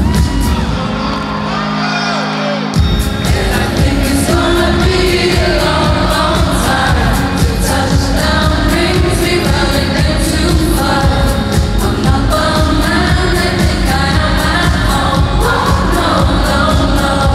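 Live dance-pop played loud through the arena sound system, with a woman singing the lead line into a handheld microphone. The bass and beat drop out for a couple of seconds near the start, then come back in with a hit just under three seconds in and run on steadily.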